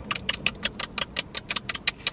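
Countdown timer ticking, a rapid even train of sharp ticks at about seven a second.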